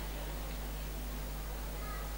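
Steady low electrical hum on the microphone and sound system, with a faint short high tone near the end.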